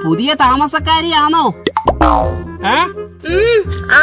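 Spoken comic dialogue in high-pitched voices over light background music, with a cartoon-style 'boing' sound effect about halfway through: a few quick clicks, then a falling twang.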